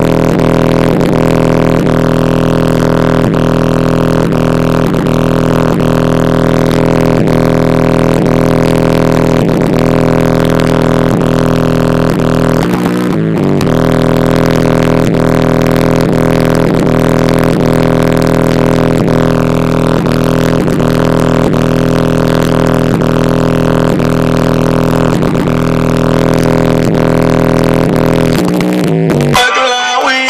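Loud music playing over a car stereo: a long held, low droning note with a faint beat running under it, breaking off briefly about halfway through and changing just before the end.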